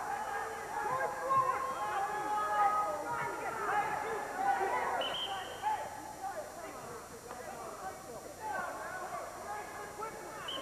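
Several voices from the crowd and mat side shouting and calling out at once at a college wrestling match, some held like yells, thinning out after about six seconds.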